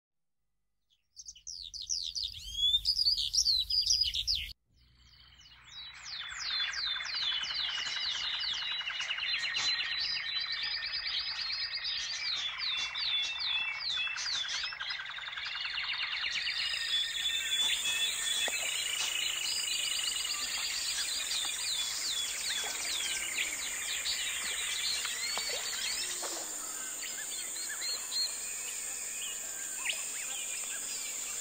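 A short burst of loud, high bird chirping that cuts off abruptly. Then a dense chorus of many songbirds fades in and carries on. About halfway through, a steady high-pitched insect trill, like crickets, joins the birdsong.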